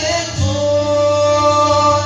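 A woman singing live into a microphone over acoustic guitar, holding one long steady note from about half a second in.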